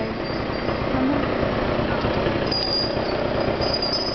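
Street traffic noise with motor engines running close by, a steady dense rumble; a thin high-pitched tone sounds over it from about halfway through.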